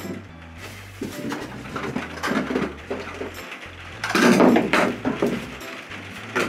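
Plastic bag rustling and hard plastic pipe fittings being handled and set down on a floor, in irregular bursts, the loudest a little over four seconds in, over background music with a steady bass line.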